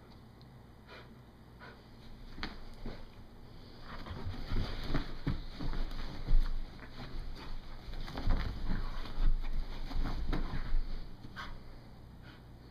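Dog out of breath, sniffing and snorting with hard breathing as she noses into a fleece dog bed, with rustling and low bumps against the bed. Sparse at first, then louder and busier from about four seconds in until near the end.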